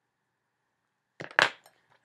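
Makeup items handled: a brief clatter of small hard objects, with one sharp knock about one and a half seconds in.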